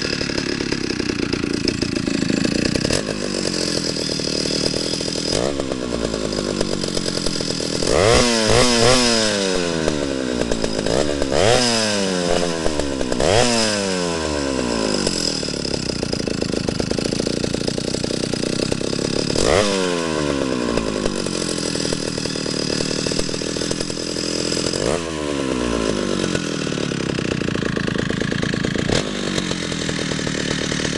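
Stihl 075AV large two-stroke chainsaw running on the table with no bar or chain fitted. It holds a steady idle and is blipped up to speed several times, each rev climbing sharply and falling back to idle. The running shows the saw starts and idles well.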